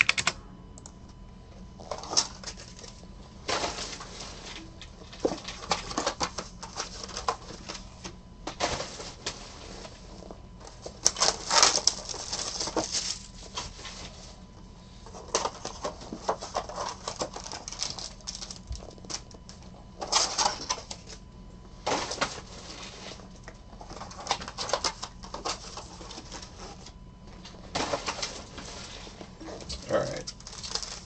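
Plastic packaging and foil-wrapped trading-card packs crinkling and rustling as they are handled, in irregular bursts of a second or two.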